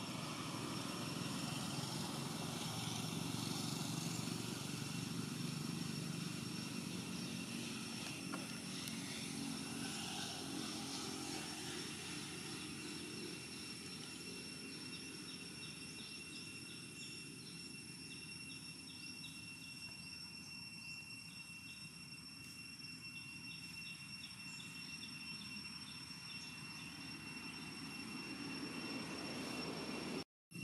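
Low rumble of a distant engine that fades through the middle and swells again near the end. Above it run a thin, steady, high insect drone and rapid insect chirping.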